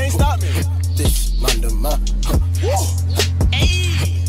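Hip hop track: a deep bass held in long notes, dropping out briefly a couple of times, under quick hi-hat ticks, with rapped vocals over it.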